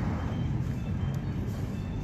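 Steady outdoor background noise, a low rumble with hiss, of the kind a street carries. A faint click comes about a second in.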